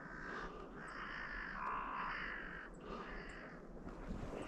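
Crows cawing: a run of harsh caws, several overlapping, as from more than one bird.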